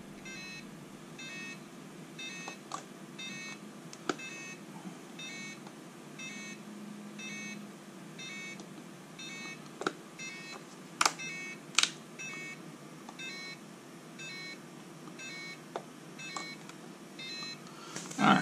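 RC radio transmitter beeping after power-on: a short, high electronic beep repeating about twice a second. A few sharp clicks of handling break in, the loudest about eleven and twelve seconds in.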